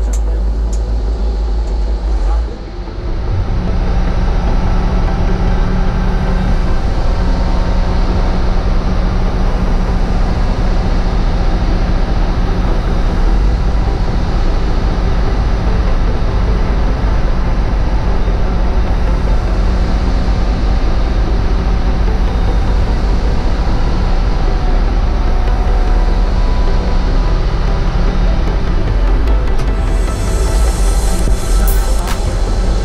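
AM500 towbarless pushback tug's engine running under load as it pushes back an Airbus A330-200, a steady low rumble with a held hum. The hum sets in after a brief dip about two and a half seconds in.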